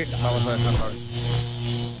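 A brief voice, then a steady low electronic hum with a hiss over it.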